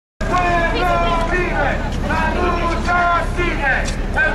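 Protest crowd chanting slogans in loud, high raised voices over a steady low rumble; it starts suddenly just after the start.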